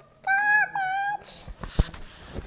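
Two high, meow-like calls in quick succession, the second dipping in pitch at its end, followed by a short breathy hiss and a few low thumps near the end.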